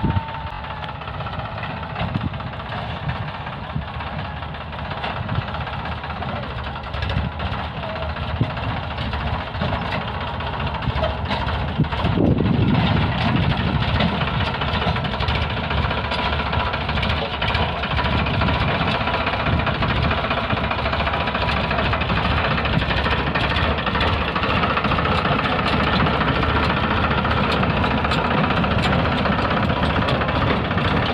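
Farmtrac 45 tractor's diesel engine running steadily as it hauls a loaded trailer over rough field ground. It gets louder about twelve seconds in as the tractor comes closer.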